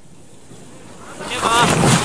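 Skijor racers and their dogs rushing past at a mass start: the hiss of skis and poles on snow swells from about a second in and grows loud near the end. Several short, high calls cut through the rush near the end.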